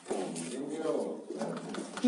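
Indistinct, muffled voices of people talking in a small room, with no clear words.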